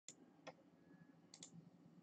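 Faint clicks of a computer mouse button over quiet room tone: four in all, the last two close together.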